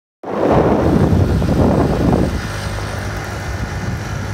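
Small moped engine running as it carries two riders over sand, louder over the first two seconds and then steadier.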